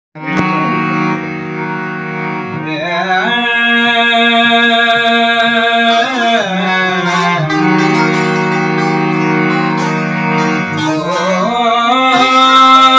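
Hand-pumped harmonium holding sustained chords. A man's voice joins about three seconds in, singing a Sindhi song with bending, ornamented phrases over the reeds.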